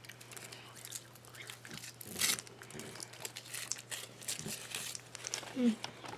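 Foil wrapper being crinkled and peeled off a chocolate Wonder Ball by hand: a run of crisp crackles, loudest about two seconds in.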